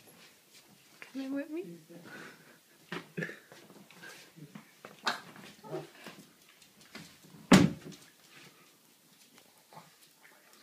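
Short vocal sounds from a small puppy and the people greeting it, among scattered knocks and clicks, with one sharp thump about seven and a half seconds in that is the loudest sound.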